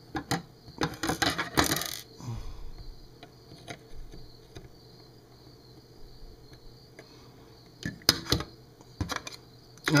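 Hard plastic clicks and rattles as the bug zapper racket's casing and cover are handled and pressed together: a busy cluster about a second in, then a few sharp clicks near the end.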